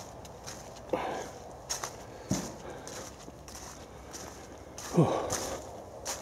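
Footsteps crunching through dry leaf litter, about two steps a second, with a few louder knocks about one, two and five seconds in, the loudest near the end.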